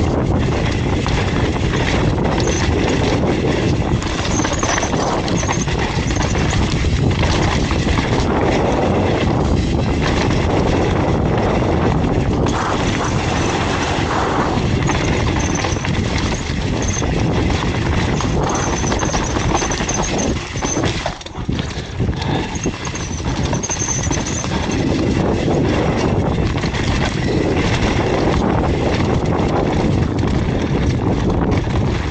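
Hardtail mountain bike descending a rough dirt and rock trail, heard from the rider's helmet: a constant dense clatter and rattle of the bike and its tyres over the ground, with a short lull a little past two-thirds in.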